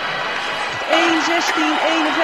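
Arena crowd applauding, a steady wash of noise, with a man's commentary coming in over it about a second in.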